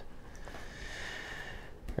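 One soft, steady breath out, lasting about a second and a half.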